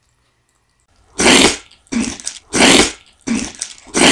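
Close-miked mouth sounds from a person eating: a quick run of loud, breathy puffs, each under half a second, starting about a second in.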